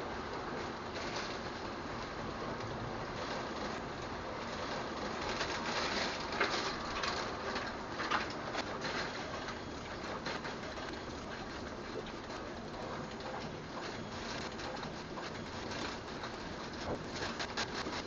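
Steady rain falling outside a window, with drops pattering and ticking on a concrete ledge. The ticking comes in thicker runs midway and again near the end.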